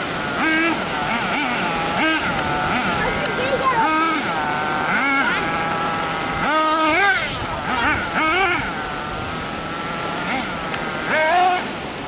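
Nitro RC buggy's small glow-fuel engine revving hard and easing off again and again as it is driven over dirt jumps, its high-pitched whine rising and falling every second or so.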